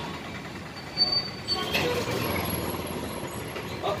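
Steady street traffic noise, with a brief voice in the background.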